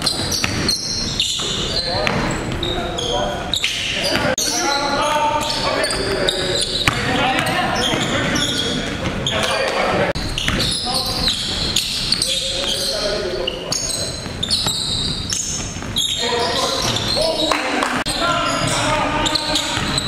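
A basketball bouncing on a hardwood gym floor during live play, with repeated sharp impacts, mixed with players' indistinct calls.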